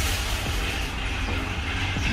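Steady low rumble and hiss of ambient noise, with faint background music.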